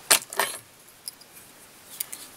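Small metal hackle pliers clinking twice against a hard surface as they are let go or set down, with one fainter click about a second later.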